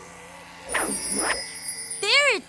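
Cartoon flying-car whoosh effect: two quick sweeping swooshes with a low rumble about a second in, over a faint steady high tone.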